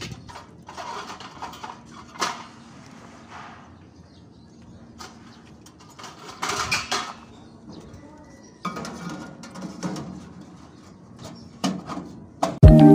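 Scattered light clicks, knocks and rattles of spandrel panels being handled and pushed into place under the eaves, busiest a little after six seconds.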